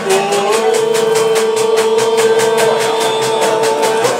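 Live Cretan lyra and laouta music. A long held, slightly wavering melody note sets in about half a second in and lasts to the end, over steady rhythmic laouto strumming.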